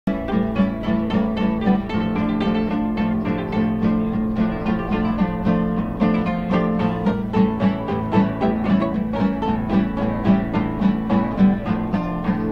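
Acoustic guitar played live, a steady run of plucked and strummed notes at about three or four a second, with no singing.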